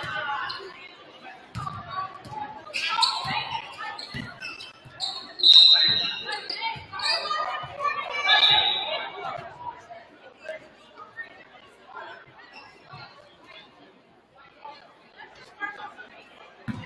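Basketball bouncing on a hardwood gym floor, about ten uneven thuds, amid shouts and voices echoing in the gymnasium, the loudest about five seconds in.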